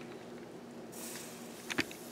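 Latex-gloved hands stretching hot mozzarella curd, quiet apart from two short clicks close together near the end, over a faint steady hum.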